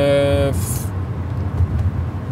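Steady low rumble of a moving car's engine and road noise heard inside the cabin. A man's voice holds a drawn-out sound for the first half-second, then breaks off.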